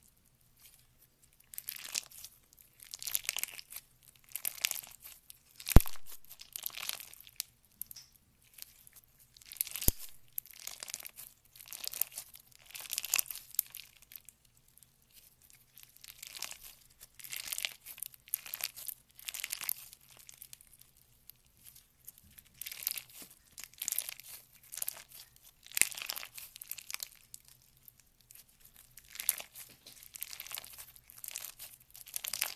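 Clear beaded slime being squeezed and pressed by hand, crackling and crinkling in bursts every second or two, with two sharp clicks about six and ten seconds in.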